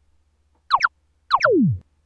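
Synthesized cartoon sound effect: two quick falling chirps about two-thirds of a second in, then another pair running into one long downward slide in pitch that ends just before "Oh, sorry."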